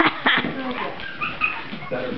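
Mi-Ki puppy whimpering during rough play, with two short, high squeaks about a second in.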